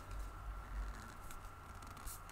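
Faint handling noise of hands gripping and twisting the plastic dust cup of a cordless handheld vacuum to unlock it, with a low rumble and a few soft ticks.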